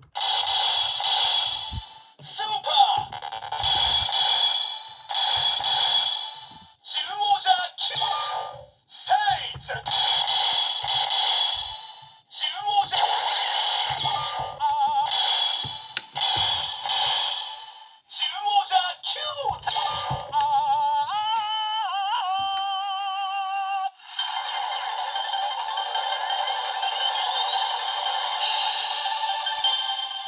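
A Bandai Seiza Blaster toy's small built-in speaker plays a run of short, tinny voice calls, then wavering electronic sound effects and a longer stretch of music. These are sound lines for Kyutama that were never released, set off by pressing the toy's Kyutama reader contacts by hand with toothpicks.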